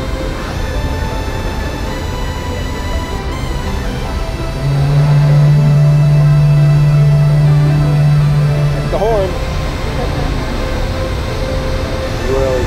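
A ship's horn sounds one long, low, steady blast of about four seconds, starting a little over four seconds in and then cutting off, over background music that runs throughout.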